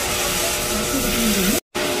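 Steady, loud hissing noise of jelly bean factory machinery (conveyors and a rotating steel drum on the production floor), broken by a brief dropout near the end.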